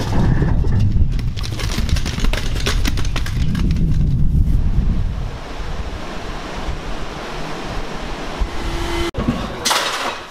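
Wind buffeting the microphone, with rattling and scraping from a hand truck rolling a refrigerator over paving stones for about the first five seconds. After that there is a steadier, quieter wind hiss, and just before the end come a few sharp knocks of a hammer.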